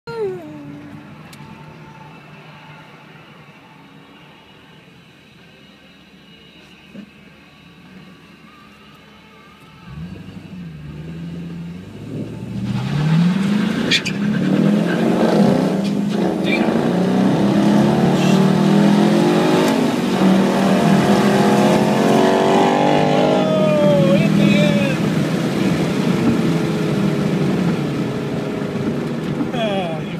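Inside the cabin of a 2011 Chevrolet Caprice police pursuit car, the V8 runs quietly at first. About ten seconds in it revs up and accelerates hard at full throttle, the engine note climbing repeatedly through the gear changes. Near the end it eases off and the sound dies down.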